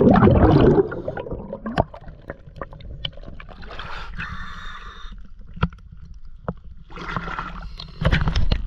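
Water sloshing around a camera housing as it comes up from under the water at a boat's waterline. A loud bubbling churn in the first second gives way to quieter lapping and dripping, with scattered sharp clicks and two short spells of hiss.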